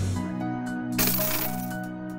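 Logo-intro music: steady held synth notes slowly fading, with a brief hissing sound-effect burst about a second in.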